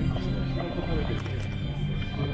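Music with long held notes playing, with people talking over it.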